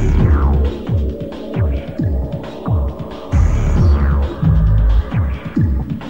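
Electronic dance music from a DJ mix: deep bass kicks that drop in pitch about twice a second over a steady bass line, with a falling synth sweep near the start.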